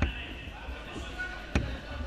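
Radio-controlled cars racing on an indoor track, with dull thumps from the cars on the track echoing in the large hall: one at the very start and one about one and a half seconds in. A murmur of voices runs underneath.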